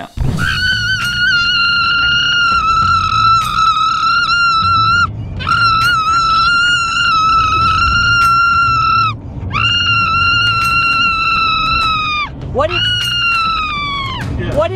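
A young boy screaming with excitement in four long, high shrieks, each held for a few seconds and dropping in pitch as it ends.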